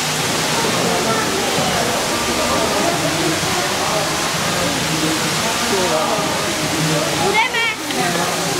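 Steady hiss of a water shower spraying mist down over elephants in their enclosure, with people's voices murmuring underneath.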